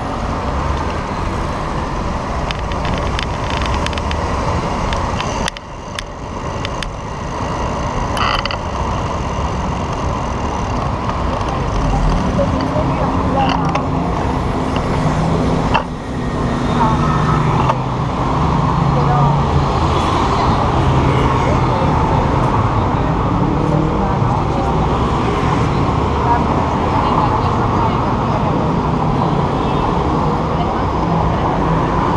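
Steady road traffic noise on a busy city avenue, growing louder in the second half.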